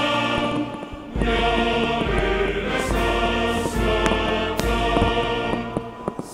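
Choral music with held chords: it dips briefly about a second in, then swells back with a deep bass underneath. A few sharp cracks sound over it.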